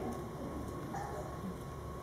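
Quiet room tone with a faint, steady low hum.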